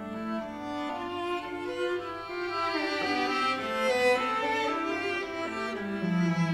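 Violin and cello duet, both bowed, playing held notes that move from one pitch to the next.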